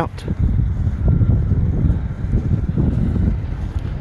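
Wind buffeting a phone microphone, an uneven low rumble with no pitch to it.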